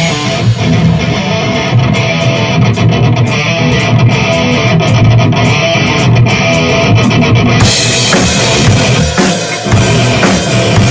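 Electric guitar playing a fast picked heavy metal riff over drums, loud and continuous.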